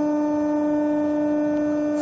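RMT R-Smart four-roll plate roll running with a steady pitched hum as its rolls lower to the parking position after a bending cycle.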